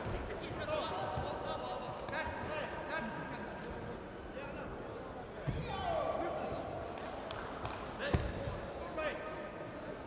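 Voices calling out in a large hall, with two short dull thuds of judoka bodies on the tatami, about five and a half and eight seconds in, the second one louder.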